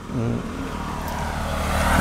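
A road vehicle coming along the road, its engine and tyre noise growing steadily louder as it approaches.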